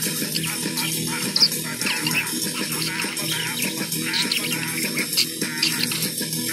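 Music playing, with a pet parakeet chattering over it in many short, quick, high warbles and chirps.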